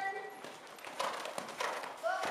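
A horse's hooves striking the arena footing at a canter as it passes close by, with several dull hoofbeats in the second half.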